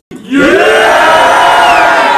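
A crowd of young men yelling and cheering together. Many voices swell up a fraction of a second in and hold one long, loud shout.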